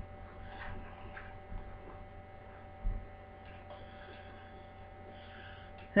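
Steady low electrical hum, with faint handling noise and one soft low thump about three seconds in.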